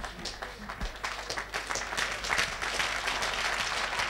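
A congregation applauding: many scattered hand claps that thicken and grow a little louder over the few seconds.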